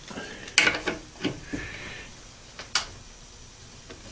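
A few scattered metallic clicks and taps, the sharpest near the end, with a brief scrape about one and a half seconds in, as a small motor in its aluminium tube mount is slid back on its base plate to tension the drive belt and a T-handle driver is set on the mount's clamping screw.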